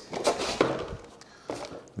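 Moulded pulp insert lifted out of a cardboard pump box: a few light knocks and scrapes of packaging being handled.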